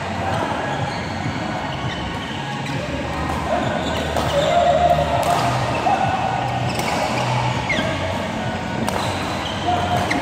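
Badminton rally: sharp racket hits on the shuttlecock every second or two, with short squeaks of court shoes on the floor, echoing in a large sports hall.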